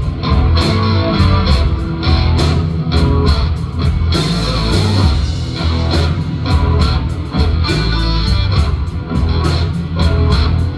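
Live blues band playing an instrumental passage: electric guitars over drums keeping a steady beat, with a heavy low end.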